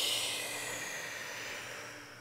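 A long audible exhale through the mouth, a soft breathy hiss that fades away slowly as the body folds forward.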